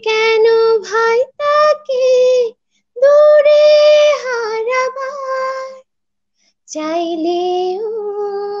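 A woman singing a Bengali song unaccompanied, holding long notes with small turns of pitch. It is heard over a video-call connection, so the sound cuts to complete silence between phrases.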